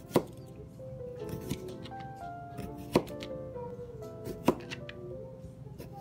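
Kitchen knife slicing a cucumber into rounds on a plastic cutting board, the blade knocking sharply on the board with each cut, the loudest knocks about a second and a half apart. Background music plays throughout.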